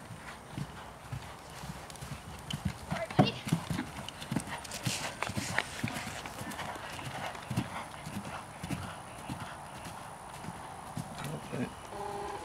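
A horse's hoofbeats on grass turf as it canters past, a run of dull thuds.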